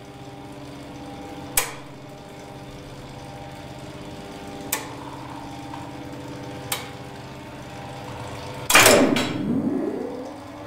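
Relay contacts in a 1959 ASEA elevator controller click sharply three times over a steady electrical hum. Near the end comes a loud clack and a whine that falls and then rises, as the elevator machinery switches and moves.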